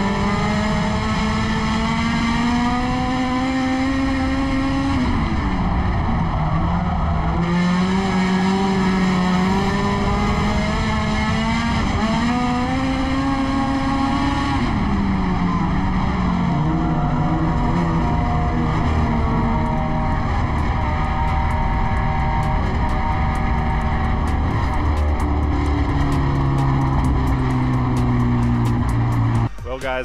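Honda K20 inline-four engine in a racing Civic hatchback, heard from inside the cockpit at racing speed. The revs climb, dip as the driver lifts for the corners about 5 and 15 seconds in, then climb again. The engine sound cuts off just before the end.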